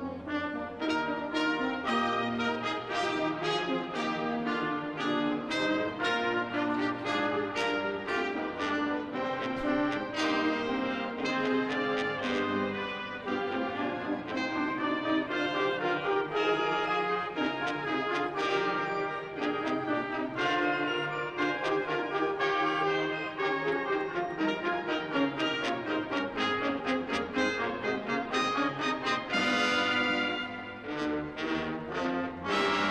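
Military brass band playing full ensemble: trombones, baritone horns, sousaphones, saxophones and clarinets together, with steady rhythmic note attacks. A loud, bright accent comes near the end.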